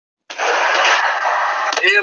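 Loud, steady background noise from an outdoor caller's end, carried over a phone or video-call line. It starts abruptly just after the opening.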